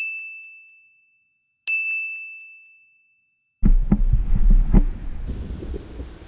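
Two high, bell-like 'ding' chime sound effects about two seconds apart, each a single tone fading out over about a second, with dead silence around them. About three and a half seconds in, outdoor noise with wind on the microphone and several knocks comes in.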